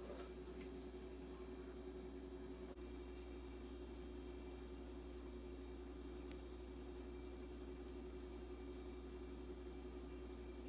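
Quiet kitchen room tone with a steady low hum, and a few soft clicks and scrapes from a spatula working thick brownie batter out of a bowl and spreading it in a glass baking dish.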